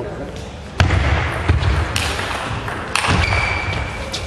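Table tennis rally: the celluloid ball clicks sharply off the bats and table, mixed with heavy thuds of the players' footwork on the hall floor. A thin high squeak is heard in the last second.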